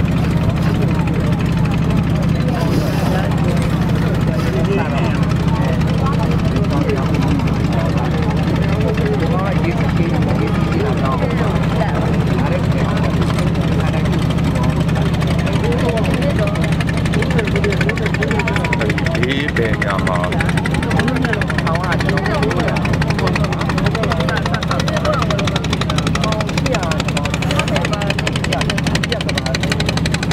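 A boat's engine running steadily with a constant low hum, with faint voices of people talking over it.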